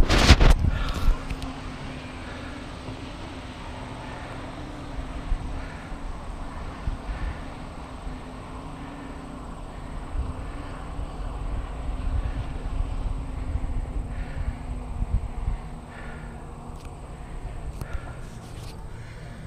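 Distant drone of racing powerboat engines out on the lake, a steady hum that wavers slightly, under gusty wind rumble on the microphone. A loud burst of wind and handling noise opens it.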